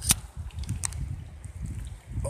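Handling noise: a low rumble on the microphone with two sharp clicks about three-quarters of a second apart.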